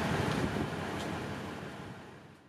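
Steady outdoor rumble and hiss with no clear pitch, fading out steadily toward the end.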